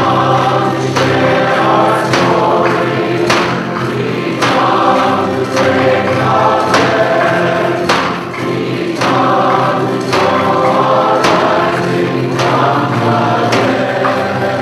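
Choir and congregation singing a processional hymn, with a percussion beat struck steadily about once a second.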